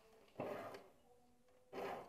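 Metal file rasping across the teeth of a hand saw, sharpening them. Two short, quiet strokes about a second and a quarter apart.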